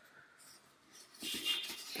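Moist compost bedding scraping and sliding against a plastic bucket as it is tipped out into a worm farm tray: a soft rustling scrape that starts about a second in.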